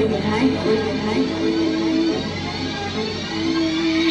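Hip-hop track playing: long held notes over a steady low bass, with a faint rising sweep in the upper range.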